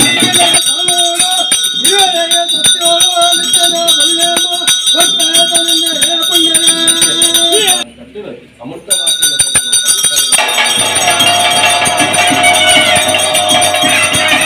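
Live traditional Tulu daiva ritual music: a wavering melody line held over an even, steady beat of percussion and jingling rattles. The sound drops out briefly about eight seconds in, then returns as a denser, louder wash of percussion.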